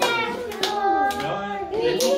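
Children singing a song, with hands clapping along about twice a second.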